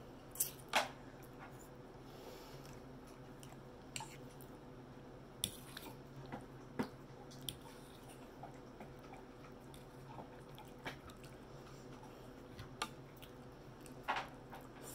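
A person chewing soft, cheese-sauced vegetables close to the microphone, with scattered wet clicks and smacks of the mouth, over a faint steady hum.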